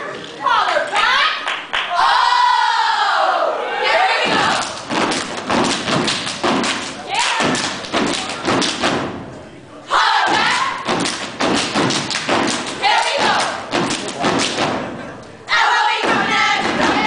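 A step team stomping and clapping in fast, rhythmic unison, in two runs split by a short pause about ten seconds in. Shouted voices come in the first few seconds and recur near the end.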